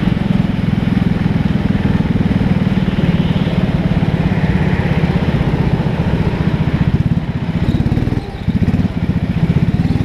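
Go-kart engine running hard under the driver, a steady buzzing drone, with a short drop in level a little after eight seconds in before it picks up again.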